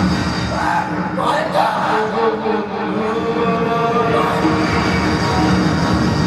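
Loud, continuous background music.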